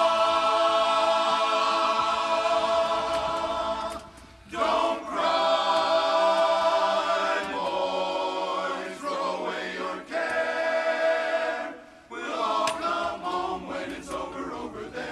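Men's barbershop chorus singing a cappella in close harmony: a long held chord for the first four seconds, then further sung phrases broken by brief pauses.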